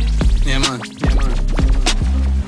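DJ record scratching over a dancehall beat with heavy bass, with quick back-and-forth pitch sweeps about halfway through.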